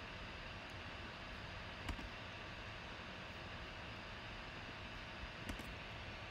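Steady low hiss of room and microphone noise with a faint steady hum, broken by two brief faint clicks, one about two seconds in and one near the end.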